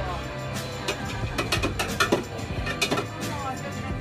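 Quick irregular run of sharp metallic knocks and clacks from a Turkish ice cream vendor's long metal paddle striking the lids and wells of his cart, over background music.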